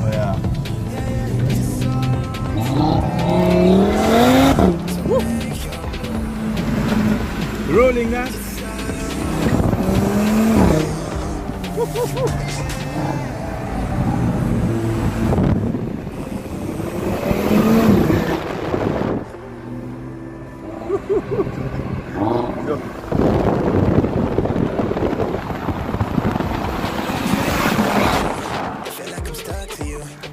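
Car engines accelerating hard in several pulls, each a rising pitch that drops at the gear change and then climbs again.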